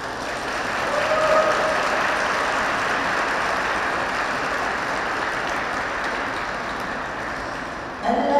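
Audience applauding after a figure skating routine, swelling about a second in and slowly dying away.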